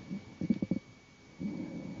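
Faint low mouth and breath noises close to a headset microphone during a pause in speech. A few quick clicks come about half a second in, then a low voiced hum just before speech resumes.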